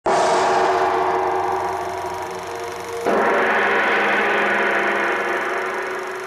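Two gong strikes about three seconds apart, each ringing on with many overtones and slowly fading.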